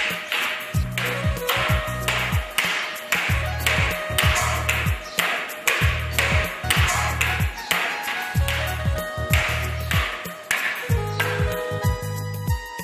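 Background music with a steady beat: sharp, ringing percussion hits about twice a second over a pulsing low bass line.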